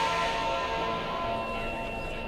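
Instrumental music of held, layered, bell-like tones over a hissing wash that thins out during the first second.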